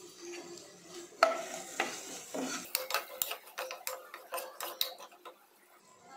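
Stainless-steel ladle stirring onions and green chillies in a nonstick pot: a sharp knock about a second in, then a run of quick knocks and scrapes of the ladle against the pot, over a faint sizzle of frying.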